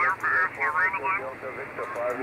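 A distant amateur station's voice heard through an HF single-sideband receiver, answering a contest call: thin, narrow-band speech over a light hiss.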